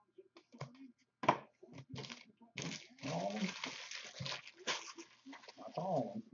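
Crinkling and rustling of trading-card pack wrappers and cards being handled, with scattered light clicks and a longer stretch of crinkling about halfway through.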